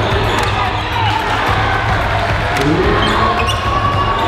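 A basketball bouncing on a gym's hardwood floor during play, with sharp knocks among the ongoing voices of players and crowd, and music underneath.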